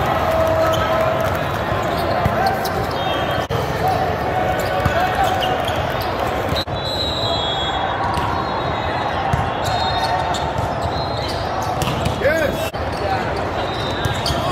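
Volleyball tournament hall din: many voices from players and spectators across the courts, echoing in the large room, with sharp smacks of volleyballs being passed and hit. Sneakers squeak on the court about twelve seconds in.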